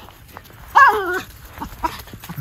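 A miniature schnauzer gives one short, high-pitched call about halfway through, its pitch bending down at the end.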